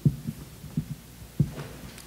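A few soft low thumps of handling on a table microphone, about three in two seconds, over a steady faint hum.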